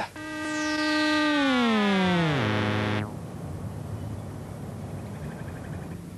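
Synthesizer sound effect for a ball falling from a height: one rich tone that holds steady for about a second, then slides down in pitch, holds low briefly and cuts off suddenly about three seconds in.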